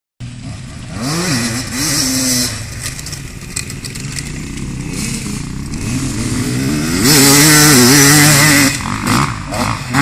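Off-road dirt bike engines revving up and down. The loudest pass comes about seven seconds in and holds high revs for nearly two seconds before dropping away.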